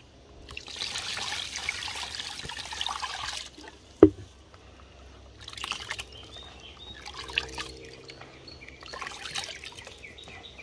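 Liquid pouring and trickling into a cooking pot for about three seconds, followed by a single sharp knock about four seconds in. Faint bird chirps follow.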